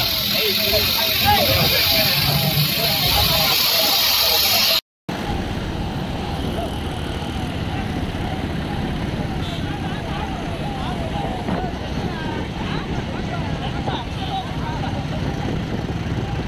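Motorcycle and car engines of a slow road procession, with the voices of a crowd calling out over them. A short cut about five seconds in drops all sound for a moment, after which the engines and voices run on somewhat quieter.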